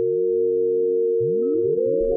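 Electronic sound design for a logo animation: held synthesizer tones with a quick run of rising pitch swoops layered beneath them, and a few short high blips.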